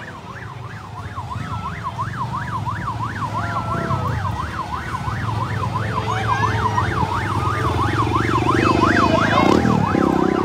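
A vehicle siren in yelp mode, rapidly sweeping up and down about three times a second, over the low rumble of vehicle engines. It gets steadily louder as the motorcade comes closer.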